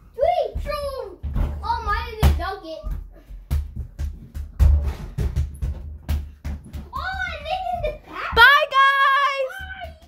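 A boy's voice making wordless vocal sounds, ending in a long sung-out note, with a quick run of knocks and thumps in the middle.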